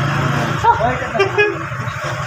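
Street traffic: a vehicle engine running with a steady low hum and a couple of short horn toots about a second in, under people's voices.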